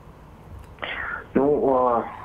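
A man's voice over a telephone-quality line, cut off above about 4 kHz: a breathy sound, then about a second in a drawn-out voiced sound as he begins to answer.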